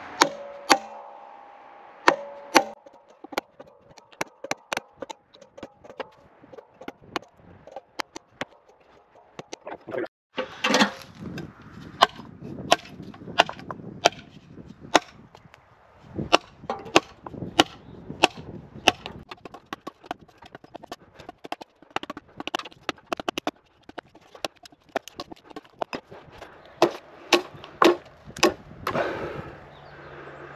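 Small axe chopping into ash timber to cut away waste wood: a long run of sharp, irregular chops, with a short break about ten seconds in.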